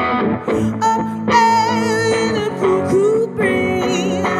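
Live song: a singer holding drawn-out notes with vibrato over electric guitar chords.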